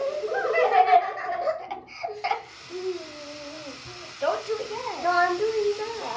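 Children's voices: giggling and wordless vocal sounds, with a long drawn-out sound in the middle.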